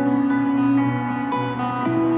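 Live rock band heard through an arena PA: a guitar picks slow, sustained notes over a steady low bass note, a quiet, gentle passage of the song.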